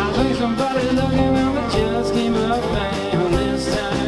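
Live americana band playing: strummed acoustic guitar, electric bass and drums, with the lead singer's voice over them.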